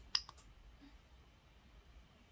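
A few short clicks from the TFT24 display's rotary control knob being pressed and turned, with one sharp click louder than the rest near the start.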